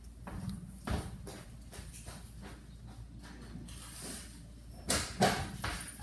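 Scattered knocks and handling noises of someone moving about a kitchen, with a sharper knock about a second in and two louder ones near the end.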